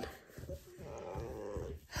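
A chocolate Labrador retriever's faint, drawn-out grumbling vocalisation lasting about a second, made as the dog yawns.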